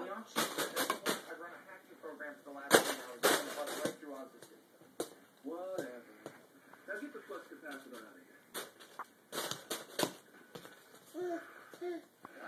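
Sharp knocks and clacks from a plastic toy golf club being swung and hit, in a few quick clusters: about a second in, around three seconds and near the ten-second mark. In between, a small child's high voice babbles.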